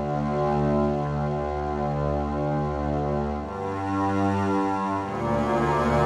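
Arturia Pigments 4 "Corrosive Strings" patch, a creepy cello-like synth string sound built from a bowed acoustic sample through a comb filter, playing low held notes that swell in slowly. The notes change about three and a half seconds in and again about five seconds in.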